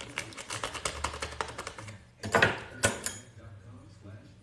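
Small clear plastic bag being opened and handled, its plastic crackling in rapid small clicks, with two louder crinkles about two and a half and three seconds in.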